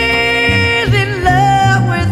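Blues song with a woman singing over a band: she holds a long note with vibrato, then slides down into the next phrase a little under a second in, with bass notes underneath.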